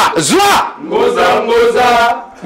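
A man yelling wordlessly into a microphone: a short cry that swoops up and down, then a long held shout that rises in pitch near the end.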